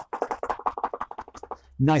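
Feet in trainers tapping quickly on a rubber gym floor in seated running on the spot, a rapid, even run of about ten taps a second that stops about a second and a half in.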